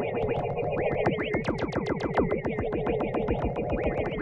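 Generative electronic music from software synthesizers: a fast stream of short plucked notes, each sliding down in pitch, several a second, over a steady sustained drone.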